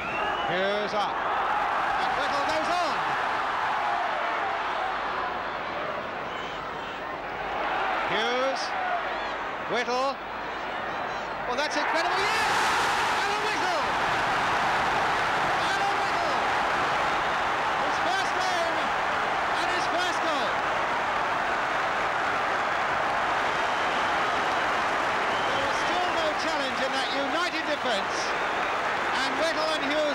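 Football stadium crowd of many thousands: a continuous din of shouting and chanting voices. It swells into a louder roar about twelve seconds in and stays at that level.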